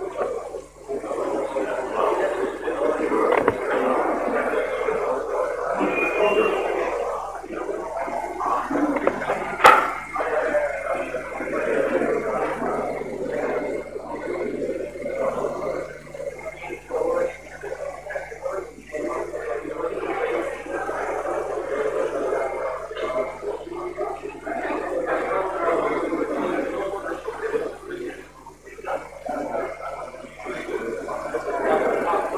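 Indistinct talk of people nearby, with a single sharp click about ten seconds in, over a faint steady low hum.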